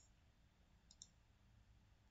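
Near silence with two faint computer-mouse clicks close together about a second in, as a spreadsheet row is selected and colour-filled.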